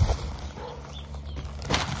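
A large plastic bag of garden soil being handled, giving a brief rustle and crinkle of the plastic near the end. A low steady rumble runs underneath.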